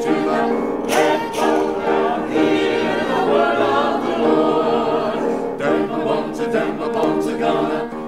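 Church choir singing in harmony, many voices holding and moving through sung chords.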